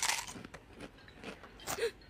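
Crunching and chewing of food, starting with a sharp crunch and followed by a few softer crunches. A brief short vocal sound comes near the end.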